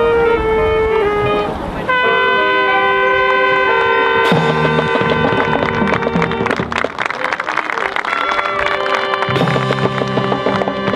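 Marching band playing: wind instruments hold sustained chords, breaking off briefly about a second and a half in before a new chord enters. From about four seconds in, lower notes and drums with cymbals join in a busy percussive pulse under the winds.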